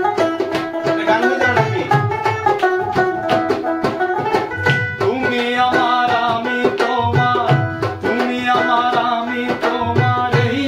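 A small banjo strummed in a fast folk rhythm over a Bangla dhol played by hand, with a voice singing along from about halfway through.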